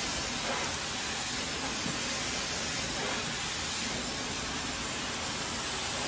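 Handheld hair dryer running steadily, a constant airy hiss, as it blows through long hair being worked with a round brush.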